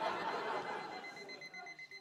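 Theatre audience laughing and murmuring over a faint, steady, high electronic alarm clock tone, which stops near the end.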